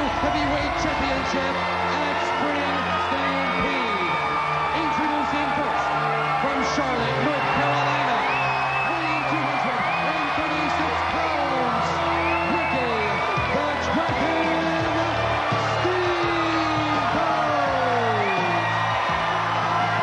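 Wrestling entrance theme music with a steady bass line plays at a constant level over an arena crowd that yells and whoops throughout.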